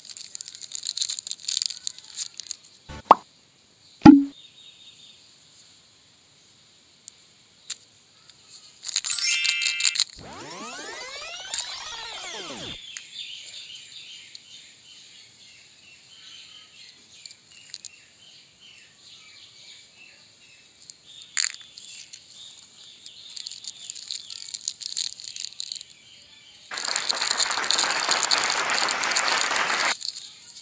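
Plastic candy wrappers crinkling and tearing open, with two sharp, loud pops about three and four seconds in. A pitched sound slides up and down in the middle, and a long burst of foil-packet crinkling comes near the end.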